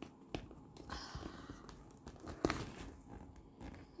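Hands handling a patent leather handbag: rustling and rubbing, with two sharp clicks, one about a third of a second in and one past the middle.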